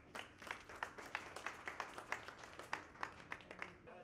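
A small group of people clapping by hand, scattered, uneven claps that stop shortly before the end.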